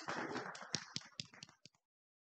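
Small audience applauding, the clapping thinning to a few scattered claps and cutting off suddenly near the end.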